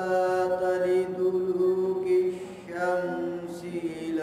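A man's voice chanting Quran recitation in Arabic, in long held melodic phrases, with a brief break about two and a half seconds in.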